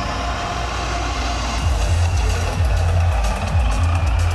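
Live electronic dance music over a large festival sound system, heard from within the crowd; a heavy bass beat comes in about a second and a half in.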